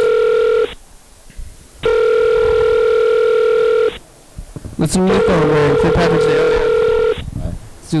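Telephone call ringing tone: a steady electronic tone that sounds for about two seconds, breaks for about a second, and repeats three times. A man's voice comes in over the third ring.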